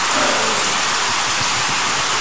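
A steady, even hiss of noise with no clear knocks or tones.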